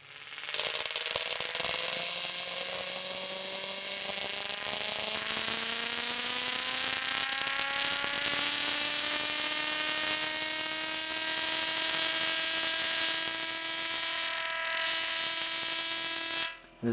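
Bedini SSG–driven Slayer exciter Tesla coil arcing from its top load to a nearby wire: a loud, hissing electrical buzz that starts about half a second in. Its pitch rises slowly and steadily, following the pulse rate of the Bedini rotor as it speeds up, which the builder puts down to the arc cutting the current the coil draws.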